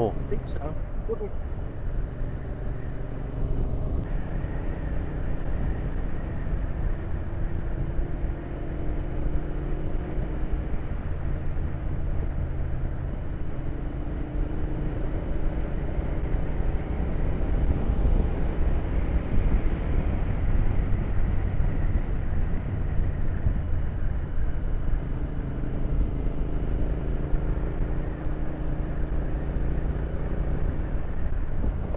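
Royal Enfield Interceptor 650 parallel-twin engine running under way, with steady wind rush on the microphone. The engine note drifts up and down a few times with the throttle.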